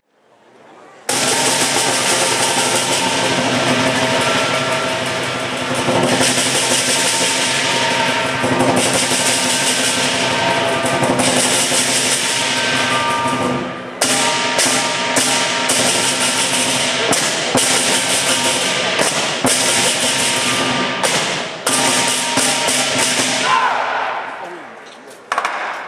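Lion dance percussion: a large Chinese drum and cymbals playing a fast, dense, continuous rhythm, starting about a second in. From about halfway, sharp accented strikes break up the rhythm.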